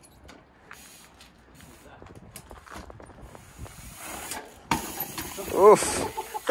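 Faint ticks and scuffs of a trials bike being ridden, then a sudden sharp knock about three-quarters of the way in. A person's short, wavering exclamation follows near the end and is the loudest sound.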